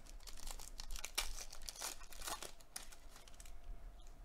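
Papery rustling and crinkling as a stack of Donruss trading cards is handled in gloved hands, a quick run of crisp scrapes that dies down about three and a half seconds in.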